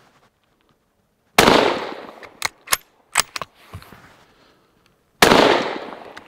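Two shots from a Savage bolt-action rifle chambered in .222 Remington, about four seconds apart, each report dying away over about a second. Between them come a few short metallic clicks as the bolt is cycled to chamber the next round.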